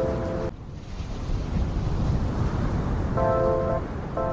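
Background music with sustained chords that cuts off about half a second in, leaving a steady low rumbling noise, and comes back near the end.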